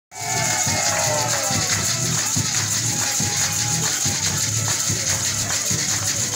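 Venezuelan Christmas parranda played live by a street ensemble: maracas shaking steadily over drum beats, with violin and cuatro. A sliding melodic line is heard in the first couple of seconds.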